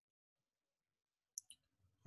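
Near silence, with two brief faint clicks close together about a second and a half in.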